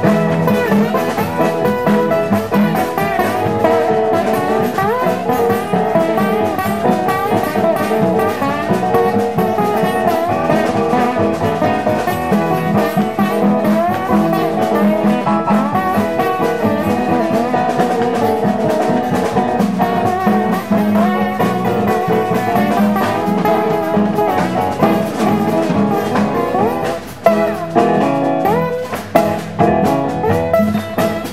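Live acoustic blues band playing an instrumental passage: piano with acoustic guitars, upright bass and drums. There are a few short breaks in the playing near the end.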